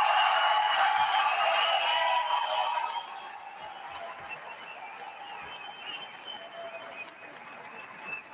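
A large audience applauding after a shouted question: loud for about the first three seconds, then dying down to a lower level.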